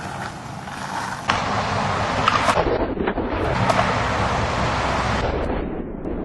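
Skateboard wheels rolling over pavement, a steady rumble, with a couple of sharp clacks of the board about two and a half seconds in.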